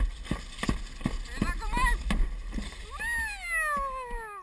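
Alpine slide sled running down its fibreglass track, clattering over the track joints with a low rumble of wind on the microphone. Near the end a rider's voice gives a long, high, falling cry.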